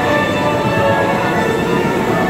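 Dark-ride attraction soundtrack music playing over a steady rumble of the ride.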